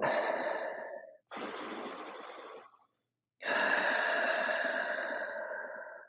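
A person breathing slowly and deeply in a paced breathing exercise: three long, unvoiced breaths with short pauses between, the last the longest and loudest, slowly fading out.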